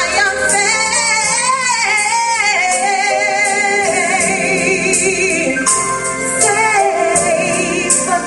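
Woman singing a gospel solo into a microphone, her voice sliding and wavering through long held notes with steady held tones beneath.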